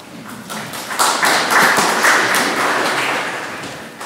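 Audience applauding, swelling about a second in and fading away near the end.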